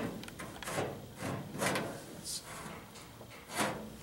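Hand-formed sheet-metal body panel shifted and rubbed against the car's body while being test-fitted, giving a few short scraping rubs about a second apart.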